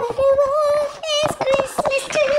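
A high voice singing long held notes at nearly one pitch, with a slight waver, broken by a few short clicks about a second in.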